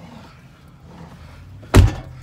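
A truck cab door slammed shut near the end, one loud thud.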